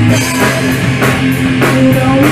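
Rock band playing: a drum kit keeps a steady beat of about three hits a second under held bass notes and electric guitar.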